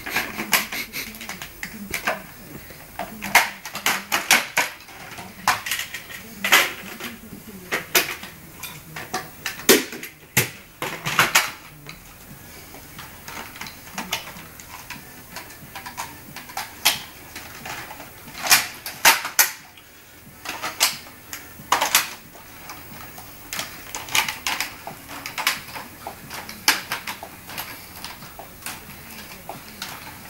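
Hard plastic parts of a Dyson DC25 upright vacuum being fitted and snapped together by hand during reassembly: a fast, irregular run of sharp clicks and knocks, some in quick clusters.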